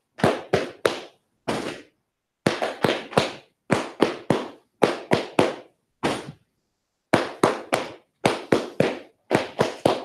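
Group of Masons giving the grand honors: hands, several of them white-gloved, clapped in unison in quick sets of three with short pauses between, repeated several times.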